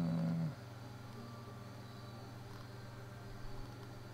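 A brief low pitched vocal sound, like a hummed 'mm', lasting about half a second at the start, then a steady low background hum with a few faint clicks near the end.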